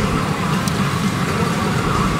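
Steady dense din of a pachinko parlour: machines and steel balls running all around, with faint electronic machine sounds over it and a single sharp click about two-thirds of a second in.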